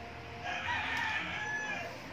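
A rooster crowing once: a single drawn-out call lasting about a second and a half.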